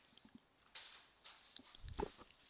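Near silence: room tone with a few faint, short rustles and a soft low thump near the end.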